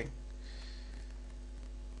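Steady low electrical mains hum on the recording, with a faint thin steady tone above it.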